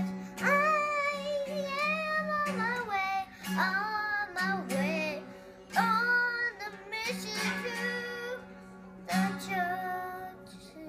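A young girl singing a melody with long held notes, strumming a small acoustic guitar.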